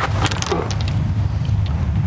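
Steady low rumble of wind on an outdoor microphone, with a few faint clicks and a brief murmur about half a second in.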